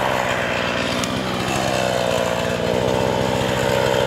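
Two-stroke chainsaw idling steadily, held at rest after a birch has been felled.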